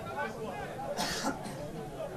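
Faint shouting voices of players across an open football pitch, with a short throat-clearing sound about a second in.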